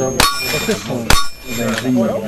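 Two rifle shots about a second apart, each followed by the ringing clang of a bullet hitting a steel target.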